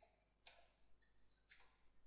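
Faint computer keyboard keystrokes: a couple of isolated key clicks while a name is typed.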